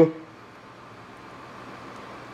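Faint, steady background noise, an even hiss with no distinct events, in a pause between a man's sentences.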